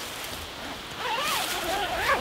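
Tent fly's vestibule door zipper being pulled shut: a rasping zip that starts about a second in and runs on to the end.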